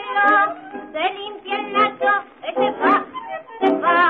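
A woman singing a comic tango with a wide vibrato, backed by a tango orchestra, on an old recording with a thin, narrow sound.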